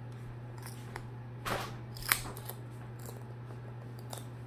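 A cockatoo's beak biting and cracking a small wooden toy: a few short sharp snaps and clicks, the loudest about two seconds in, over a steady low hum.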